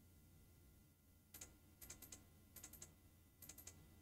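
Faint typing on a computer keyboard: four short clusters of key clicks, starting about a second and a half in.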